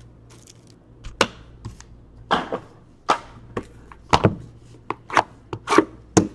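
Trading cards being handled and set down on a table one after another: a string of separate soft taps and swishes, roughly one every half second to second.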